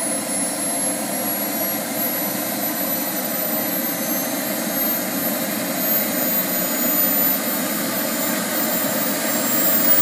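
Model jet's small gas turbine engine running on the ground: a steady rushing noise with a high whine that slowly climbs in pitch.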